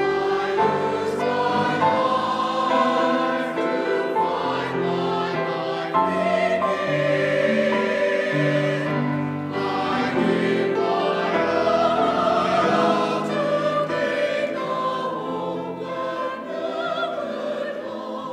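A mixed church choir of men and women singing in harmony, accompanied on grand piano, in sustained phrases that soften near the end.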